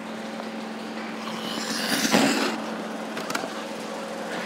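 Ice-rink sound: a steady low hum with a hiss of figure-skate blades on the ice, swelling to a louder scrape about two seconds in and then easing off.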